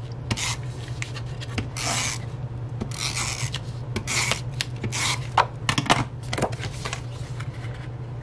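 Tape-runner adhesive dispenser drawn along the back of a cardstock panel in a series of short, irregular strokes, laying down double-sided tape, with a few sharp ticks between them.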